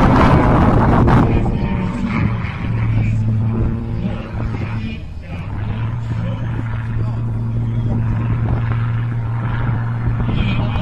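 A small display aircraft's engine heard from the ground as a steady low drone. Wind buffets the microphone, loudest in the first second.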